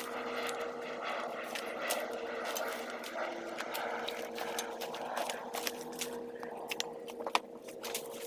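Dead palm fronds, branches and broken wood rustling and crunching as they are walked over and handled, with many sharp snaps and cracks, more of them in the second half and one loud crack near the end. A steady mechanical hum runs underneath.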